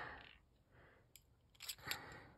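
Faint handling sounds of beads and a beadable pen: a single small click about a second in, then a short cluster of clicks and rustle near the end as a large bead is pushed down the pen's metal rod and fingers touch the beads in the tray.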